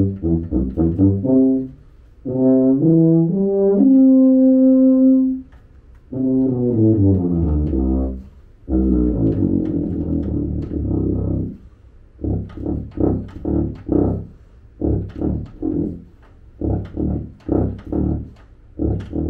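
A tuba played solo. It opens with a few quick short notes and a rising phrase that ends on a held note. A falling run and a low passage follow, then a long string of short, detached tongued notes to the end.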